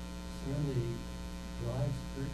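Steady electrical mains hum on the recording, with faint, indistinct speech over it twice.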